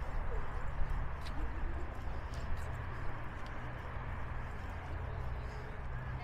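Outdoor walking ambience: a steady low rumble with a few light footstep-like clicks and faint distant voices of passers-by.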